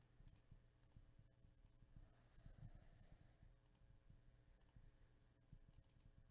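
Faint computer mouse clicks, about five scattered single clicks over near-silent room tone.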